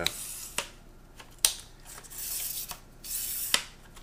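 Twist-lock leg collars of a G-raphy 58-inch aluminium tripod being turned by hand, heard as rubbing scrapes with a few sharp clicks.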